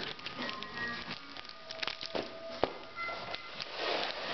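Crinkling and crackling of a handbag woven from folded paper cigarette-pack wrappers as it is handled, with music playing in the background.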